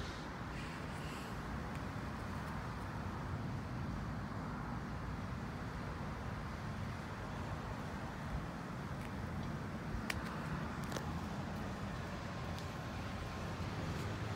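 Steady outdoor background noise, a low rumble such as distant traffic, with a few faint clicks about ten seconds in.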